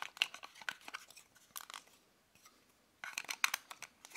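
Plastic battery cover being pushed and slid back into place on the underside of a handheld mini wireless keyboard: a scatter of small plastic clicks and scrapes, a short pause a little after the middle, then a quick cluster of clicks as it snaps home.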